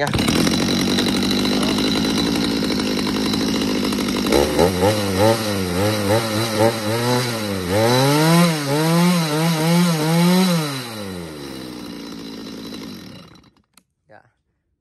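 Stihl 021 two-stroke chainsaw engine running steadily, then revved up and down several times on the throttle before it drops back and stops near the end. It runs smoothly, without knocking.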